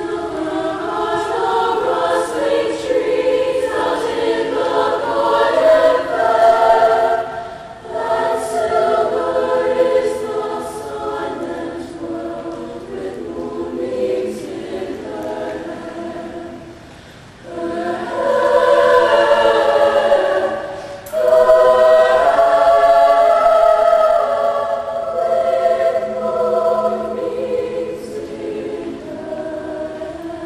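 Women's choir singing in several parts, sustained pitched phrases that break briefly about seven seconds in and again around seventeen seconds, then come back louder.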